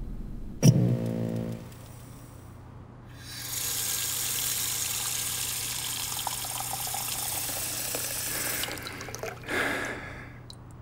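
A sharp hit with a brief low ringing tone about half a second in, then a bathroom faucet running water into a sink for about five seconds, followed by a short splash near the end.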